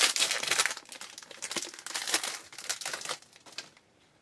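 A shiny foil trading-card pack wrapper being torn open and crinkled by hand. There is a dense burst of crackling in the first second, then lighter, scattered crinkles that die away as the cards come free.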